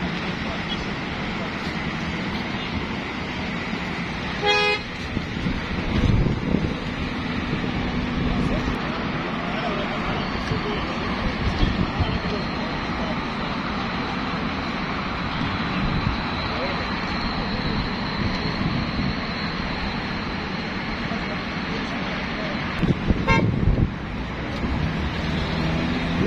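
Outdoor street ambience of a crowd talking among cars, with a short car horn toot about four and a half seconds in. Another brief, louder burst comes near the end.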